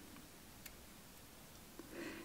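Near silence: room tone, with a single faint click about two-thirds of a second in.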